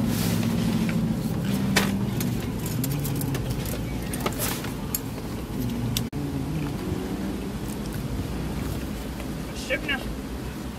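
Steady low hum of a motor vehicle engine running, under scattered light clicks and crinkles of plastic take-out containers being handled.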